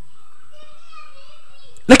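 A faint, high-pitched voice speaks in the background, thin and wavering, under a pause in the loud male voice-over. The man's voice comes back loudly at the very end.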